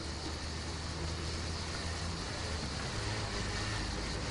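Steady low engine hum under a hiss, its pitch shifting slightly higher about three seconds in.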